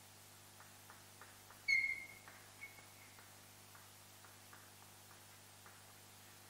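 Chalk writing on a chalkboard: light irregular taps and scratches of the chalk, with a short high-pitched squeak of the chalk a little under two seconds in and a fainter one about a second later.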